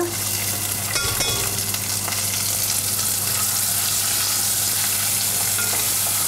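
Drained, soaked basmati rice sizzling steadily in hot ghee with whole spices in a heavy pan, starting as the rice goes in. A few light knocks about a second in.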